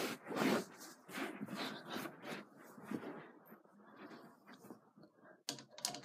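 Rustling and handling noise close to the microphone as scooter parts are handled, with a few light clicks near the end.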